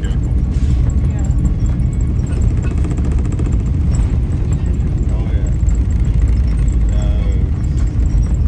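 Loud, steady low rumble heard inside the cabin of an Airbus A330 rolling along the runway after touchdown: engine and wheel noise through the fuselage.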